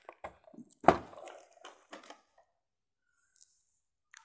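A thump about a second in as a large gift-wrapped box is set down on a table, amid a few small clicks and a brief rustle of its glossy wrapping paper.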